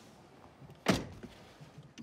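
One short, sharp thunk inside a car about a second in, over faint background hiss.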